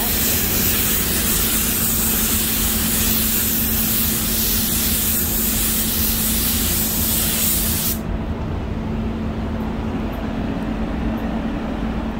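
Paint spray gun hissing steadily as it sprays paint onto a car body. The bright hiss stops suddenly about eight seconds in, leaving a lower rushing noise and a steady hum from the spray booth's ventilation.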